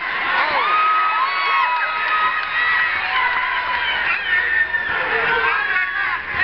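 Fight crowd cheering and shouting, many voices yelling at once without a break, with some held yells among them.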